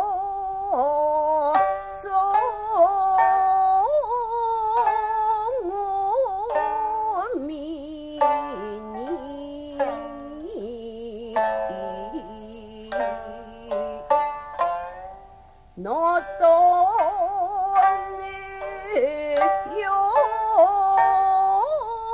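Jiuta: a woman singing in long, bending notes with wide vibrato to her own shamisen accompaniment, its plucked strokes sharp and sparse between the vocal lines. The voice pauses briefly about two thirds of the way through, then comes back in.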